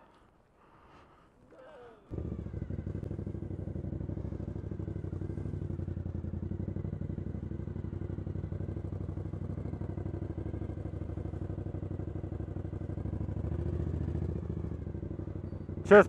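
Motorcycle engine idling steadily with an even firing beat, heard after about two seconds of near silence. It swells slightly a couple of seconds before the end.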